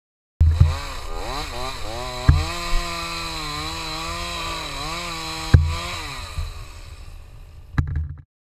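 Two-stroke chainsaw revved up and down several times, held at high speed for a few seconds, then winding down. A few sudden loud knocks cut through it.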